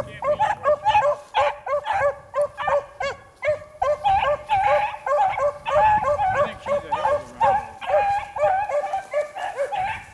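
Beagles baying on a rabbit's scent line: a steady run of short, pitched calls, about three a second, drawing out into longer, wavering howls midway through.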